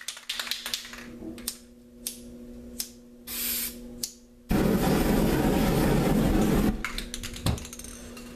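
Clicks and taps of a lighter and spray can being handled, with a short spray hiss about three seconds in. About halfway through comes a loud, even rushing hiss lasting about two seconds: aerosol spray paint fired through a lighter flame, setting the wet paint on the canvas alight. A few more clicks follow.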